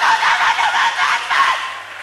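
Live audience laughing, the laughter fading near the end.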